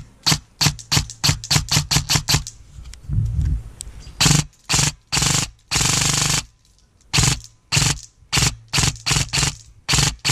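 Airsoft electric rifle (AEG) firing: a rapid string of single shots, then more single shots broken by short full-auto bursts.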